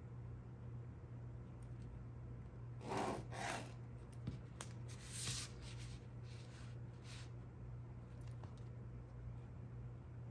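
Faint scratching and rubbing of a pen and a clear plastic graph ruler on paper as the ruler is slid into place and lines are drawn along it, a few short strokes about three seconds in and again between about five and seven seconds, over a low steady hum.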